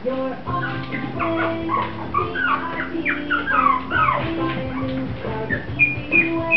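Mi-Ki puppies whimpering and yipping as they play, in short falling cries, over background music with held notes.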